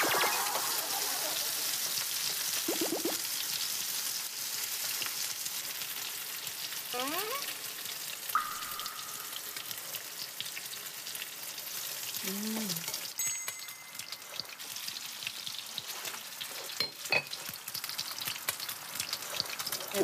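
Strips of pork belly sizzling in an oiled frying pan: a steady hiss of frying fat with scattered crackles and pops as the oil spatters.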